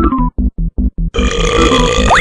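A long, loud cartoon belch from a drawn character, starting a little over a second in, over a music track of short, evenly spaced chords.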